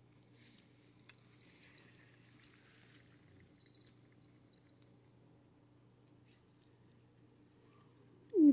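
Near silence: a few faint soft clicks of a cat licking melted ice cream from her paw in the first three seconds, over a low steady room hum.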